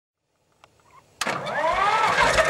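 Electric starter motor whining up sharply about a second in as the Bolinder-Munktell Victor tractor's two-cylinder engine is cranked, with low, heavy thumps coming in underneath as the engine starts to fire.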